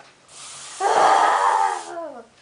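A boy's loud, drawn-out scream, starting about a second in after a breathy rush and sliding down in pitch at the end.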